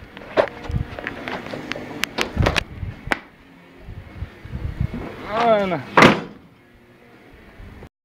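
A screen door handled with several knocks and clatters, then banging shut with a loud slap about six seconds in.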